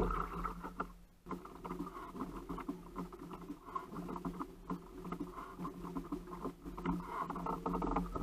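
Close-up tackle and hull noise aboard a kayak while a fish is being reeled in: a steady run of small rapid ticks and rubbing from the fishing reel and gear against the hull, with a brief break about a second in.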